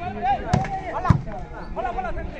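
Two sharp slaps of a volleyball struck by hand about half a second apart during a rally, the second one the loudest, over shouting voices from players and onlookers.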